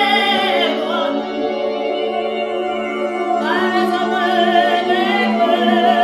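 A woman singing long held notes over a steady low electronic drone, her voice sounding layered like a small choir. The pitch slides down about half a second in and glides back up about three and a half seconds in.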